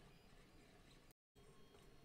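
Near silence: faint room tone, broken by a moment of complete digital silence just past a second in.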